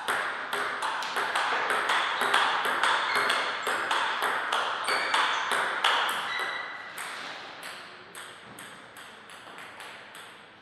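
Table tennis ball clicking back and forth off the paddles and table in a fast rally, each hit ringing in the hall. The hits come several times a second, then grow fainter and sparser over the last few seconds.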